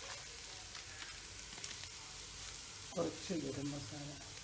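Vegetables sizzling in a nonstick frying pan as they are stirred with a wooden spatula, with faint scraping ticks. A short voice-like sound, the loudest thing heard, comes about three seconds in.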